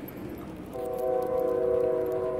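Train horn sounding in the background: one steady chord of several notes that starts under a second in and holds.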